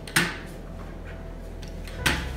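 A single sharp knock a moment after the start, dying away quickly, over a low steady hum.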